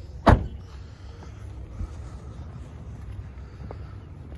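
A 2022 Dodge Challenger's door shutting with a single solid thud about a quarter second in, followed by a low steady background rumble.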